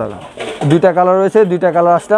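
A man's voice speaking with drawn-out vowels; nothing but speech shows.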